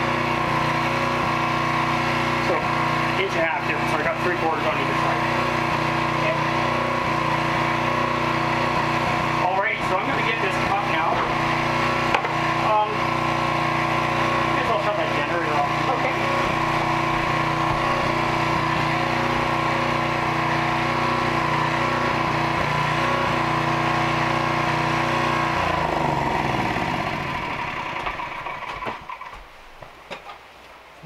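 A motor running steadily with a constant hum, then switched off near the end, its pitch falling as it winds down to a stop.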